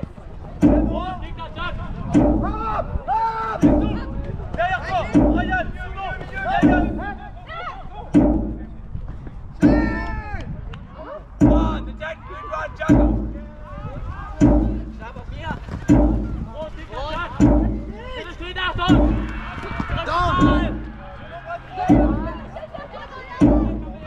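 Jugger timekeeping drum struck once every one and a half seconds, counting the 'stones' of play, with players shouting over it.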